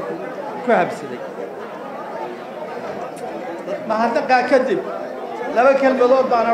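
Speech: a man talking into microphones, with other voices chattering behind.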